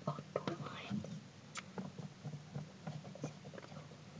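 Faint whispering with small scattered clicks and rustles over a low steady hum.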